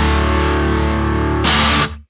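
The final held chord of a Japanese emo rock song: distorted electric guitar ringing out. A brief noisy burst comes about one and a half seconds in, and then the sound cuts off abruptly.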